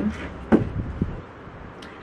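Handling noise from a small black plastic decoration mechanism being turned in the hand: one sharp click about half a second in and a softer click about a second in.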